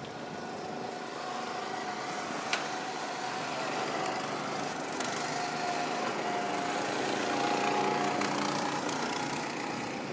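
Small go-kart engines running, their drone wavering in pitch as the karts speed up and slow down. A single sharp click comes about two and a half seconds in.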